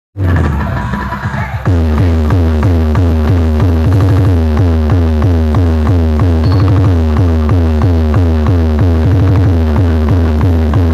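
Loud electronic dance music played through a DJ sound-box rig, dominated by heavy bass. About one and a half seconds in, a fast, evenly repeating beat kicks in and keeps going.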